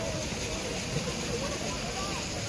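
Street ambience: a steady bed of noise with faint, distant voices talking.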